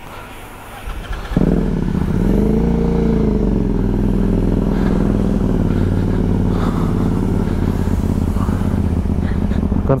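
Motorcycle engine starting about one and a half seconds in, revving briefly up and back down, then running steadily at low revs as the bike rolls off.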